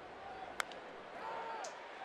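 A single sharp crack of a baseball bat striking a pitched ball, about half a second in, over a faint ballpark crowd murmur.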